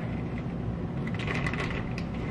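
Plastic bag of shredded cheese crinkling as cheese is shaken out of it, faint and scratchy from about halfway in, over a steady low room hum.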